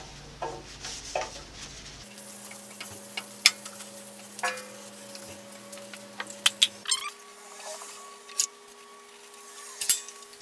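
Scattered light clicks and knocks as a bandsaw's metal rip fence, on a bar freshly lubricated with Boeshield T-9, is handled along with a rag and a can, over a faint steady hum.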